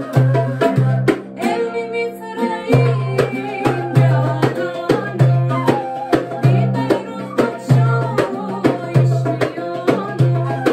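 Folk song played on an end-blown wooden flute, an oud and a darbuka goblet drum, with a woman singing. The drum keeps a steady beat, drops out briefly about a second in, then comes back.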